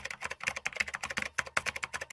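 Rapid computer-keyboard typing clicks, a run of many keystrokes a second, used as a sound effect for on-screen text being typed out letter by letter.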